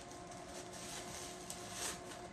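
Faint rustling and crinkling of plastic bubble wrap being pulled off a small jar, with a soft crackle about one and a half seconds in and a brief louder rustle near the end.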